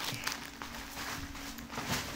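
Faint rustling and handling noise as a plastic-wrapped pack of toilet rolls is moved and set aside, over a low steady hum.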